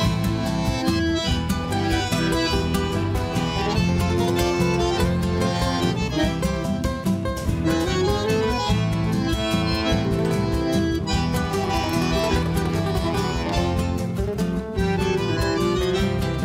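Instrumental introduction of a gaúcho folk song. A bandoneon plays the melody over a steady rhythm of electric bass and guitar.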